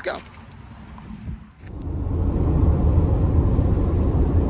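Car cabin road noise at highway speed, a steady low rumble of engine and tyres. It comes in about two seconds in, after a short stretch of quiet outdoor ambience.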